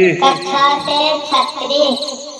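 Steady, high cricket-like chirring in the background, with a louder pitched sound over it whose pitch wavers and bends, fading near the end.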